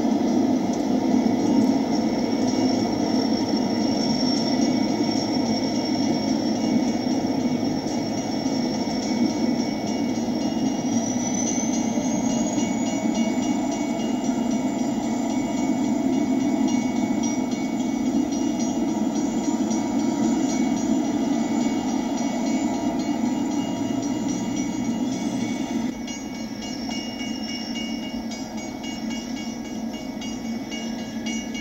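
Missouri Pacific welded rail train moving slowly on the track with a steady rolling rumble and a thin, high squeal over it that rises in pitch about eleven seconds in. The sound gets quieter for the last few seconds.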